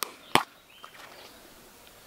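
Plastic screw lid of a Mod Podge jar being twisted open, with a sharp click about a third of a second in, after which it is quiet.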